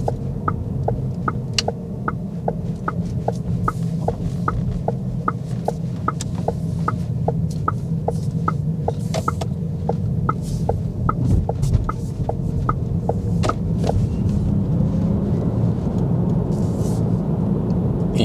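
Inside the cabin of a moving Cupra Born electric car: steady low road and tyre rumble, with the turn-signal indicator ticking evenly at about two and a half ticks a second. The ticking stops about thirteen seconds in, as the turn is completed.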